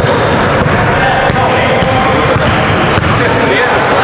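Basketball being dribbled on a hardwood gym court, with a steady din of voices around it.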